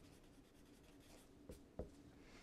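Felt-tip marker writing a word, very faint strokes, with two light taps of the tip about one and a half seconds in.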